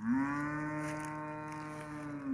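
A cow mooing: one long call at a steady pitch that slides up at the start.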